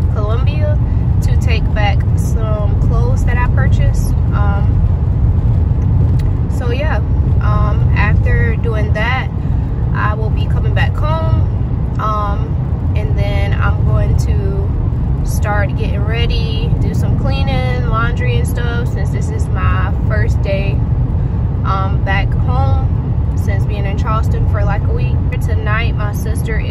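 A woman talking over the steady low rumble of road and engine noise inside a moving car.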